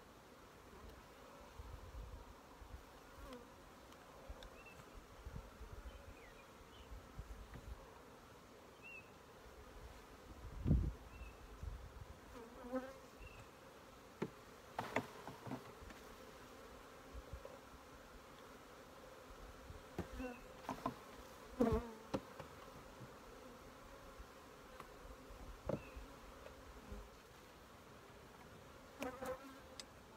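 Honey bees buzzing steadily around an open hive, with scattered wooden knocks and clacks as hive boxes and frames are handled; the loudest is a dull thump about eleven seconds in.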